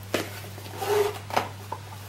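Light handling sounds of paper and a cardboard box being picked up: a few short clicks and soft rustles over a steady low hum.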